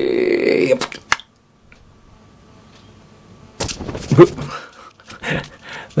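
A man's drawn-out cry as he jumps down off a wall, then a few sharp clatters of landing on shingle pebbles about a second in. After a short gap, his voice comes back in short breathy bursts near the end.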